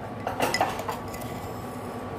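A spoon clinking against a seasoning container a few times in quick succession about half a second in, as seasoning is scooped out for the pot.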